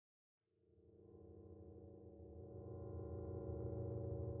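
Silence, then about half a second in a low, steady electronic drone of several held tones fades in and grows gradually louder.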